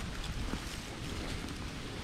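Wind on the microphone: a steady low rumble with a faint hiss.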